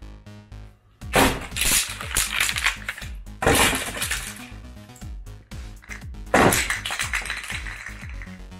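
Cut lengths of half-inch PVC pipe dropped onto a bare concrete floor, clattering and bouncing. There are three loud bursts: about a second in, around the middle, and a little past six seconds.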